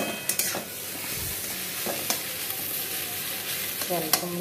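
Food frying in a metal kadai (wok) with a steady sizzle, stirred with a spatula that scrapes and clicks against the pan a few times in the first half-second and twice about two seconds in.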